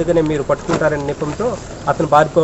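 A man speaking in Telugu, in short phrases with brief pauses.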